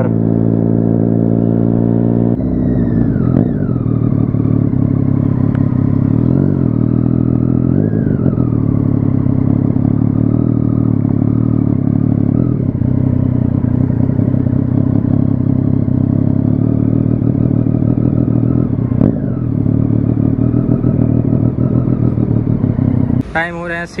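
Motorcycle engine running, steady for the first couple of seconds, then its revs rising and falling several times.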